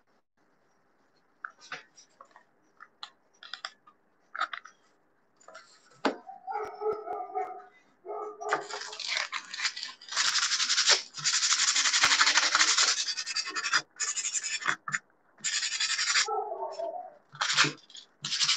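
Hands rubbing and pressing a hot-glued wooden bird cutout down onto the work, making a dry, scratchy rubbing in several bursts from about halfway through. Before that, a few faint clicks and taps from handling the piece.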